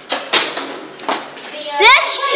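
Children's voices: a few short vocal sounds, then a child's loud, high-pitched squeal near the end, rising and wavering in pitch.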